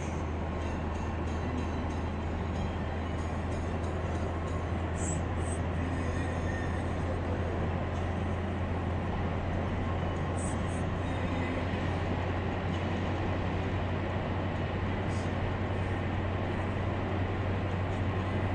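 Steady road noise inside a moving car at highway speed: a constant deep rumble of tyres and engine under an even hiss.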